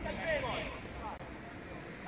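Faint, distant voices calling out across an open football pitch during the first second, over a low outdoor rumble.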